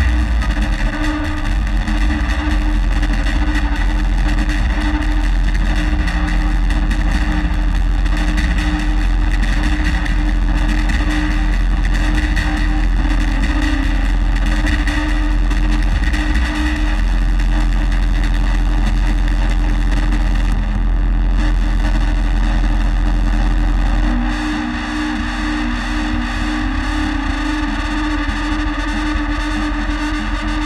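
Loud distorted electronic noise music from a modular synthesizer and keyboard: a dense continuous drone over a steady low tone and heavy sub-bass. The sub-bass drops away about three-quarters of the way through, and the sound grows a little quieter.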